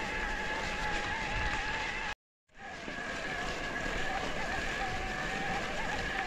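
Electric mountain bike's mid-drive motor whining steadily under pedalling, over the rush of tyres rolling on gravel. The sound cuts out completely for a moment a little over two seconds in, then resumes.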